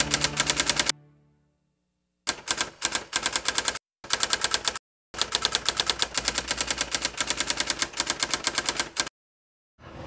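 Typewriter keystroke sound effect for text typing onto the screen. Rapid clicking, about nine strokes a second, comes in runs of one to four seconds broken by short silent pauses.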